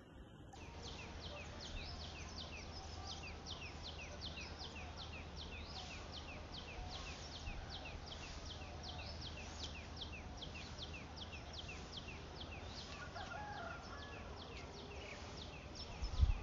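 A bird calling over and over in a field, a quick falling chirp about three times a second, over faint outdoor noise and a low steady hum.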